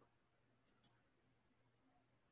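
Two quick computer mouse clicks close together, a little under a second in, against near silence.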